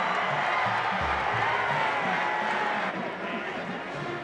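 Football stadium crowd noise with music playing over it to a steady low beat.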